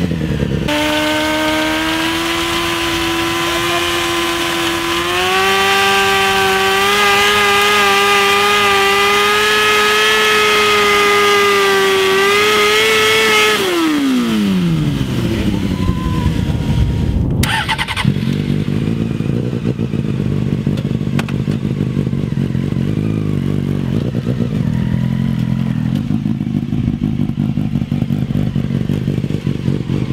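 Honda CBR600F4 inline-four engine held at high revs, its pitch rising a little and holding for about thirteen seconds while the rear tyre is spun in a burnout. The revs then fall away and the engine settles to a lumpy, uneven idle.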